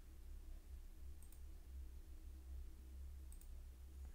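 Two faint computer mouse clicks, about a second in and near the end, over a low steady hum and otherwise near silence.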